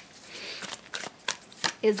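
A tarot deck being handled in the hands: a soft rustle of cards, then a few light, separate card clicks.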